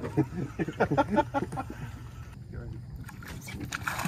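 Men laughing, and near the end water splashing as a hooked alligator thrashes at the surface.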